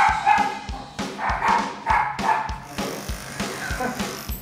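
A Yorkshire terrier barking and yipping in short, repeated calls, over background music with a steady drum beat.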